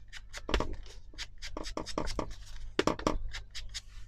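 A quick, irregular run of taps as an ink blending tool is dabbed onto an ink pad, with a pair of scissors lying against the pad rattling on the cutting mat.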